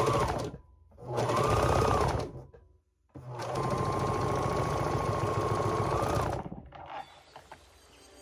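Serger (overlock machine) stitching a side seam in knit fabric, running in three stop-and-start runs, the last and longest about three seconds, each with a steady high whine. It stops about a second before the end.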